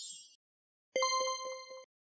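Logo sound effect: a high shimmering sweep tails off, then about a second in a bright bell-like chime rings with several rapid repeated strikes and cuts off sharply.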